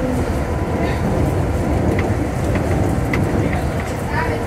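Inside a MIA Mover people-mover car, a Mitsubishi Crystal Mover on rubber tyres, running along its elevated concrete guideway: a steady rumble of tyres and car body with a few light clicks and rattles. A low hum stops just after the start.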